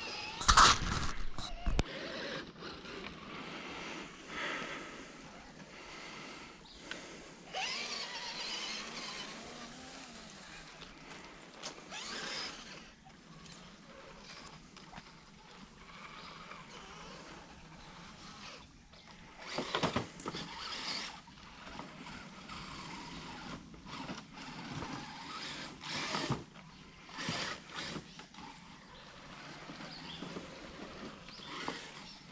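Electric motors and gearboxes of radio-controlled rock crawlers whining in short throttle bursts as the trucks creep over wet rocks. A loud bump comes about a second in.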